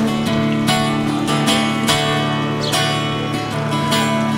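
Acoustic guitar strummed in a steady rhythm, its chords ringing between sung lines of a blues song.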